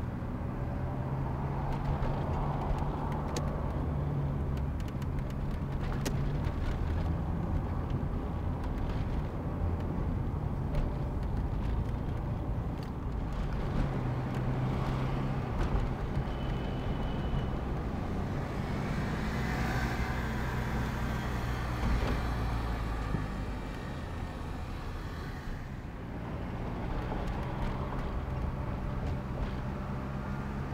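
Car engine and city traffic recorded from a moving car: a steady low engine hum that shifts in pitch as the car speeds up and slows, with other vehicles passing.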